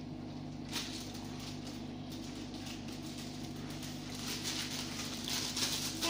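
Plastic sweet packets rustling and crinkling as a child handles them, with soft crackles that pick up near the end, over a steady low hum.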